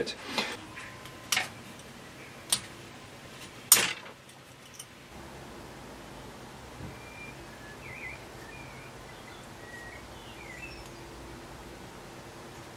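Four sharp knocks of small tools and parts handled on a wooden workbench in the first four seconds, then faint short bird chirps in the background.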